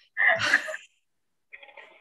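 A short, breathy burst of a person's voice, about half a second long, shortly after the start, followed by a faint trace of voice near the end.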